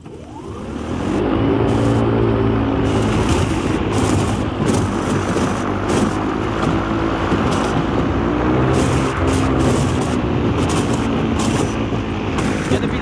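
Airboat under way, its propeller drive building up to speed over the first second or two and then running steadily. Against it come frequent short cracks and knocks as the hull breaks through thin lake ice.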